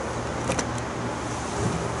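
Handheld microphone being passed from hand to hand: a couple of sharp handling clicks about half a second in, over a steady low hum.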